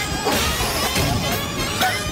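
Busy cartoon soundtrack: music overlaid with quick sound effects, sharp cracks and whooshes among short wavering high-pitched glides.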